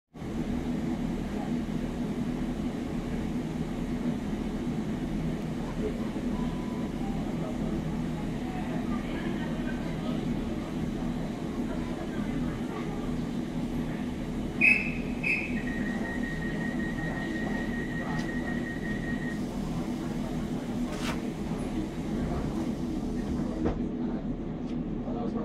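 Diesel passenger train standing at the platform with its engine idling in a steady low hum. About two-thirds of the way through come two short high beeps, then a run of rapid beeping at one pitch for about four seconds, and a sharp click shortly after.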